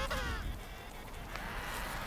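Emperor penguin giving a short call that falls in pitch and ends about half a second in, followed by a faint steady hiss.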